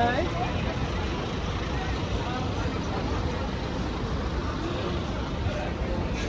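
Busy street ambience: a steady rumble of traffic and bus engines with the chatter of passing pedestrians. A woman's voice is loudest right at the start, as she walks past.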